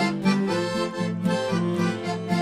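Accordion playing an instrumental passage of a folk song over a repeating bass-and-chord pulse.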